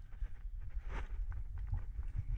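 Low wind rumble on the microphone with a few light scuffs and taps about a second in, from a climber's hands and shoes moving on the rock face.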